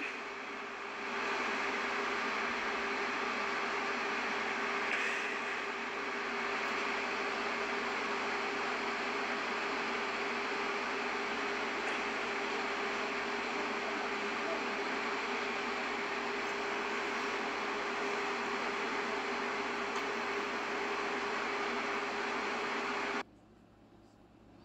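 Steady background hiss with a constant low hum on a phone's live-stream audio, with no speech; it cuts off suddenly near the end.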